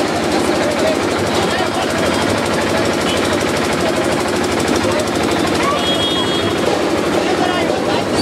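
Loud, fast, continuous rattling beat of procession drums, with crowd voices shouting over it.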